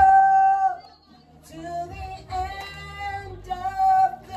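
A woman singing long, held notes, breaking off just under a second in and then going on.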